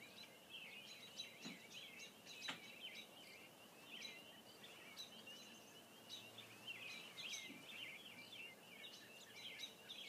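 Faint, continuous high twittering of a small bird, rapid short chirps and little glides. A couple of light taps in the first few seconds.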